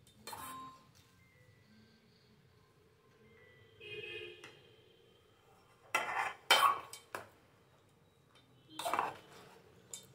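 A steel spoon scraping and clinking against the side of a metal bowl while mixing cooked rice. It comes in a few short strokes with quiet gaps between them, some leaving a brief metallic ring.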